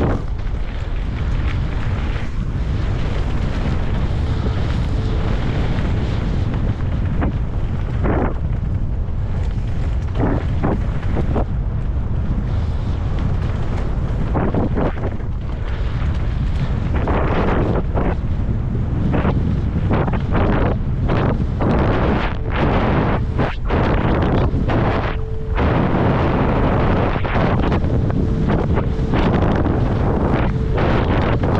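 Wind buffeting a helmet-mounted camera's microphone as a mountain bike descends at speed, over steady tyre rumble. Frequent sharp knocks and rattles from the bike on rough ground, busier in the second half.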